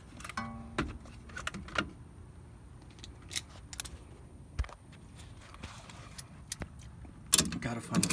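Irregular metallic clicks and clinks of a Kobalt ratcheting adjustable wrench being worked onto a bolt under a car, with a faint steady high whine behind.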